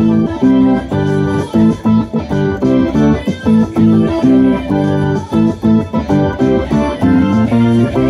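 Hammond organ playing short, rhythmic chord stabs along with a rock band recording that carries electric guitar.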